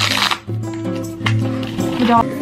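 Background music with a steady beat, over which a hook-and-loop strap on an air walking boot is pulled open in a short rasp that ends about half a second in.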